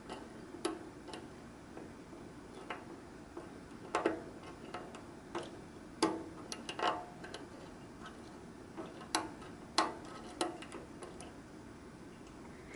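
Lock pick and tension wrench working the pins of a Paclock pin-tumbler lock held in a false set: faint, irregular metallic clicks and ticks, with a few louder ones around four, six and nine to ten seconds in.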